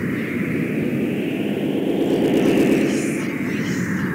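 Experimental analog electronic music made on homemade instruments: a hissing, filtered noise sweep that rises in pitch and falls again, with a deeper rumble under it swelling to its loudest about two and a half seconds in.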